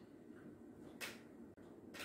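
Near silence: faint room tone, with one short soft tap about a second in.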